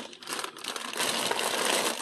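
Rustling and crinkling of a reusable shopping bag and its contents as groceries are rummaged through and pulled out. The rustle is louder in the second half.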